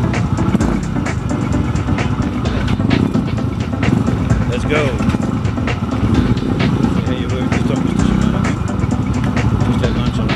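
Motorcycle engines running at idle, with people's voices mixed in.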